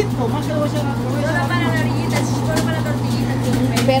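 Corn grinding mill's motor running with a steady low hum while it grinds corn into masa, with voices talking over it.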